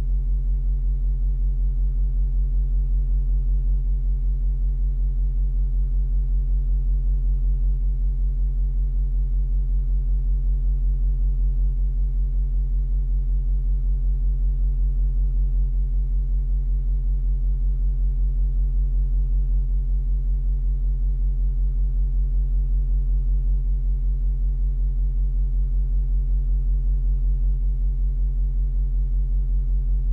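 Steady low electronic drone of layered sustained tones, pulsing faintly a few times a second, with no change in pitch or level.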